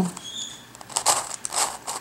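Plastic pieces of a Crazy Radiolarian twisty puzzle clicking and scraping as a face is turned by hand, in a quick run of light clicks.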